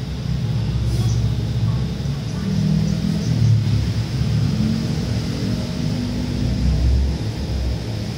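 Low, steady rumble of a vehicle engine running close by, swelling and easing over several seconds, with a faint high steady whine above it.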